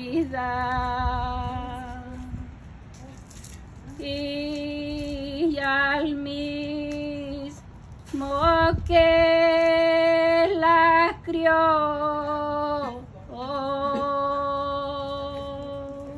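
A woman's solo voice singing a Spanish hymn to the Virgin Mary in long held notes, in four phrases with short breaths between them.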